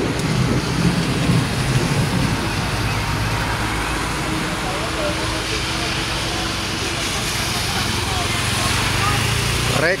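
Heavy rain falling steadily, a constant hiss, mixed with traffic on the wet road: tyres swishing and an engine humming as vehicles pass.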